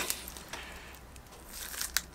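Faint rustling handling noise as an object is picked up and brought forward, with a small click near the start and another near the end.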